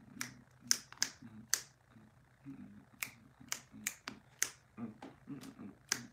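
Finger snaps, sharp and roughly twice a second in a loose rhythm, with faint low humming between them.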